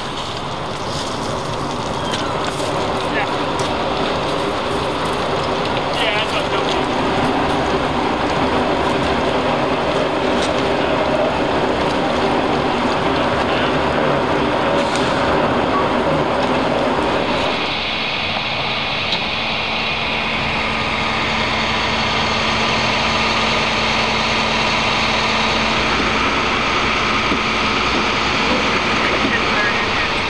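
Fire engine's diesel engine running steadily beside a hydrant, with a broad rushing noise over it. About eighteen seconds in the sound changes: the higher hiss drops away and a steady hum comes in.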